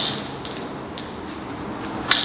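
Marker pen squeaking on flip chart paper in a few short strokes as a not-equal sign is drawn.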